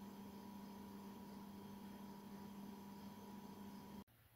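Faint steady electrical hum over low room hiss.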